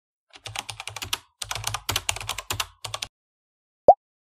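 Keyboard typing sound effect: quick clicks, about ten a second, in several short runs. Near the end comes a single brief, loud pitched blip.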